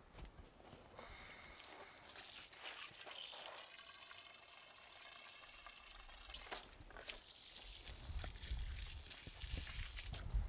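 Water from a garden hose pouring into a plant container, a faint steady splashing. A low rumble builds in the last few seconds.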